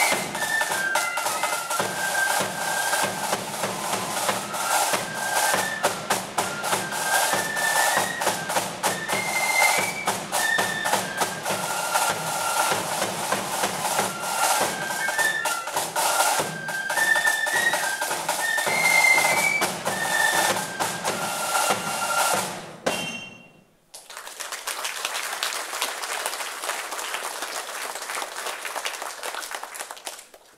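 Flute band playing a march: a massed line of flutes carrying a high melody over bass drum and other drum beats. The music cuts off suddenly about 23 seconds in, followed by a steady noise with no tune.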